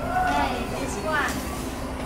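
Steady low mechanical hum of a pedicure spa chair running, with two short high-pitched vocal sounds from a child over it.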